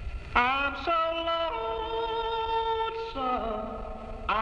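Country song from a home reel-to-reel tape recording: a long, wordless held vocal note that scoops in, steps up in pitch twice, and slides down about three seconds in.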